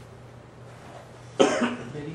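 Quiet room tone, then one short cough about one and a half seconds in.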